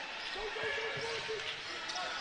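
A basketball dribbling on a hardwood court over arena crowd noise, with indistinct voices.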